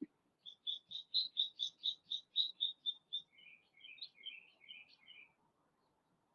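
A songbird singing: a fast run of about a dozen quick, even high notes, then a lower, jumbled warble that stops about five seconds in.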